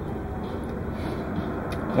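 Steady low rumble of background noise, unchanging throughout.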